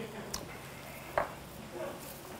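Faint sizzling of seafood and octopus cooking in a pan on a tabletop burner, with a faint click about a third of a second in and a short, sharper sound just over a second in.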